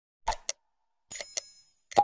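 Subscribe-animation sound effects: a quick pair of mouse clicks, then a bell ding that rings for well under a second, then another pair of clicks near the end.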